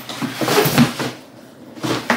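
Cardboard shipping box being opened and a shoebox pulled out of it: rustling and scraping of cardboard for about a second, then a short knock near the end.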